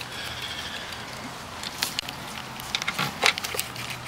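A few scattered light clicks and taps, most of them in the second half, as a Snap-on flexible quarter-inch drive with an 8 mm socket is handled and fitted onto a metal clamp screw; a faint steady hum runs underneath.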